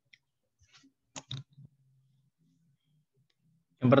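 Two short, sharp clicks about a fifth of a second apart, typical of a computer mouse button advancing a presentation slide, followed by a faint low hum.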